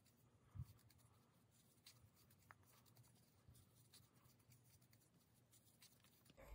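Near silence with faint scratching and rustling of a metal crochet hook pulling acrylic yarn through stitches, and one soft low thump about half a second in.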